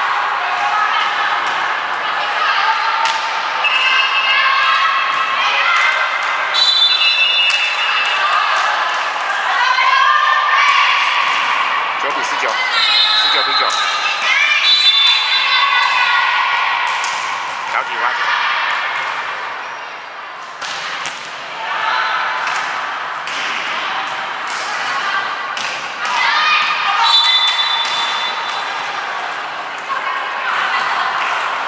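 Women's volleyball rally in a gymnasium: players and spectators shouting and calling in high voices through the play, with short sharp hits of the ball on hands and floor.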